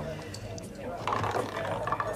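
Roulette wheel spinning, the ball rattling and clicking irregularly around it, with party chatter behind.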